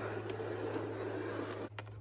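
Plastic wheels of a toy car rolling across carpet as it is pushed by hand, a steady rustle that stops suddenly near the end.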